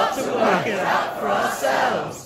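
A crowd of many voices shouting a line in unison, "Yes! We've got to work it out for ourselves!"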